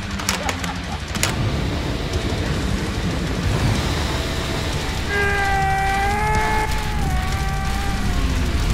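A large fire burning as a hut goes up in flames: a loud, steady rush with a few sharp cracks in the first second or so. About five seconds in, a long held note with a slight waver comes in over it.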